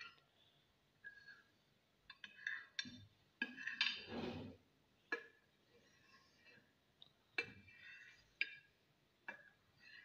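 Kitchen knife tapping and clinking against the bottom of a glass baking dish as it cuts set jelly into small pieces, in faint, irregular strokes. A longer scraping sound comes about four seconds in.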